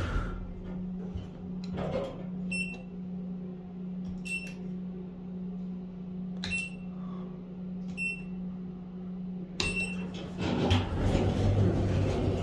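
Schindler 3300 elevator car-panel buttons beeping, four short high beeps a second or two apart as floor buttons are pressed, over a steady low hum in the car that stops about ten seconds in.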